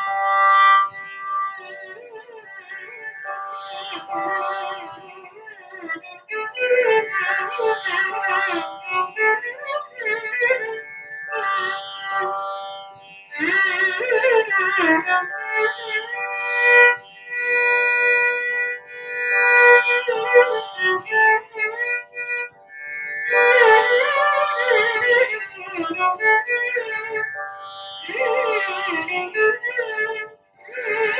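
Carnatic music: a female voice with violin accompaniment, the melody gliding and ornamented over a steady drone.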